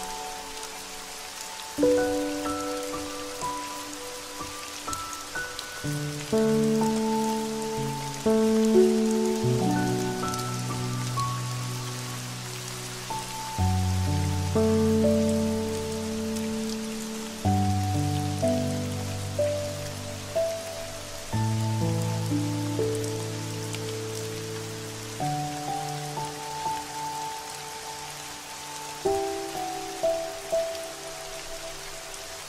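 Steady rain falling, mixed with slow, mellow music: sustained chords over a low bass, with a new chord about every four seconds.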